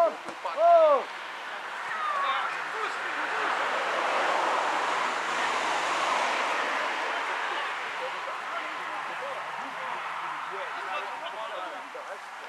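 A man's short, drawn-out shout right at the start, then a rushing noise that swells over a few seconds and slowly fades, with faint distant shouts from players near the end.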